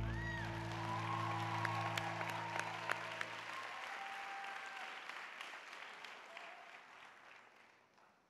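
A band's last held chord fades out about four seconds in, under audience applause. The clapping dies away toward the end.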